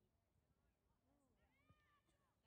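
Near silence, with faint distant calling voices; one drawn-out call rises and falls in the second half.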